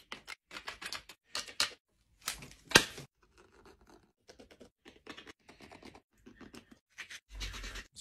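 A hand tool scraping and carving a caribou antler in short, irregular strokes, with one louder scrape just under three seconds in.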